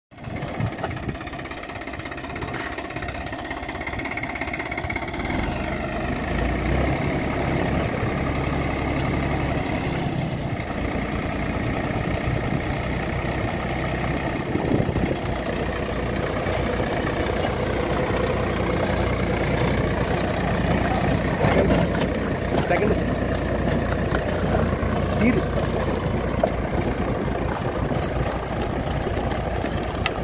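Swaraj 744FE tractor's three-cylinder diesel engine running steadily under load while driving a gear rotavator through the soil.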